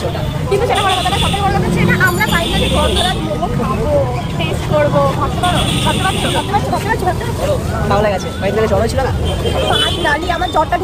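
People chattering over a steady low rumble of vehicle traffic.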